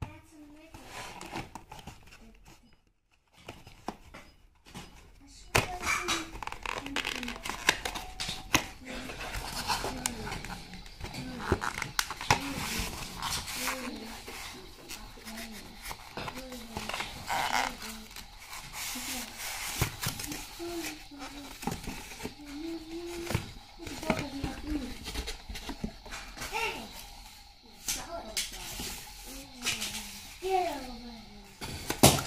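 Cardboard box and foam packaging of an electric toothbrush being handled and slid open, with rustling, scraping and sharp clicks. A person's voice, without clear words, runs alongside from about five seconds in.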